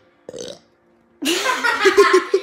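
A brief puff of breath, then about a second in a loud burp from a boy that runs straight into a quick burst of laughter.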